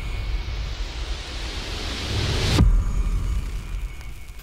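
Title-card sound effect: a swelling noise sweep that rises over about two and a half seconds and cuts off on a deep hit, followed by a fading rumble.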